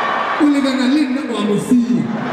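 A man's voice through a stage microphone, speaking from about half a second in, in a bending, sing-song pitch, over a steady hiss of room and audience noise.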